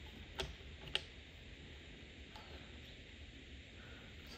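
Faint handling of a fog light and a small plastic spring clamp: two light clicks about half a second apart near the start, then only low background noise.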